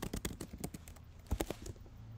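Computer keyboard keys clicking in a quick, irregular run of keystrokes as a short line is typed, with a few louder clicks past the middle.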